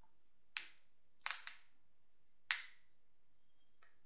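Sharp clicks from computer controls being pressed: three clear ones a little under a second apart, the middle one a quick double, and a fainter click near the end.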